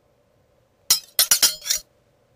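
A quick run of about five sharp, glassy clinks, starting about a second in and over in under a second.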